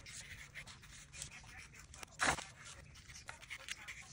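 Fine-tip marker faintly scratching short squiggle strokes on paper, with one brief louder sound a little past halfway.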